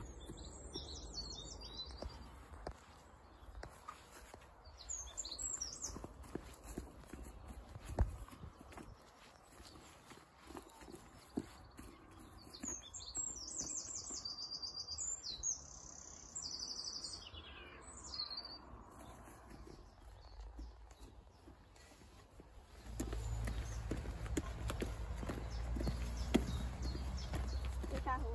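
Small birds singing in short, high chirping phrases, several times over. Faint footsteps and rustling run under them, and a low rumble on the microphone comes in for the last five seconds.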